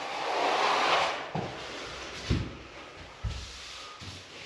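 Plastering trowel scraping across a freshly sponge-floated plaster wall, a long rasping sweep in the first second or so, followed by a few soft knocks.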